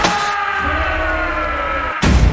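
Trailer sound effect: a siren-like chord of several tones sliding slowly down in pitch over a low rumble, cutting off abruptly at the end.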